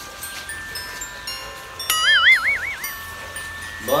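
Edited-in chime-like sound effects: soft, sustained ringing notes enter one after another at different pitches. About two seconds in, a whistle-like tone warbles quickly up and down for about a second.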